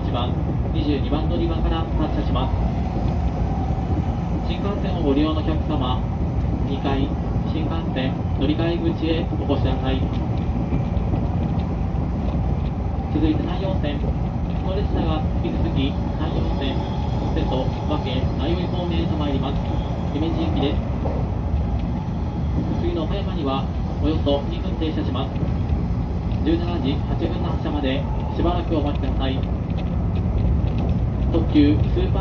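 Steady running rumble heard inside a JR 113-series electric train car, with people talking indistinctly throughout.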